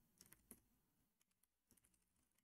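Faint computer keyboard typing: a few soft keystrokes in the first half-second and a few more near the end, otherwise near silence.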